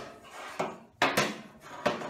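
A long metal straight edge being handled and set against a car's sheet-metal rocker panel: two short scraping knocks, one about a second in and one near the end.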